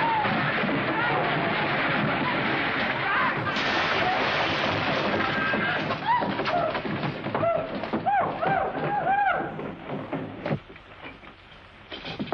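Film soundtrack of a loud commotion: a dense rumbling din, then a run of loud rising-and-falling shouts or calls, settling to a much quieter level about ten seconds in.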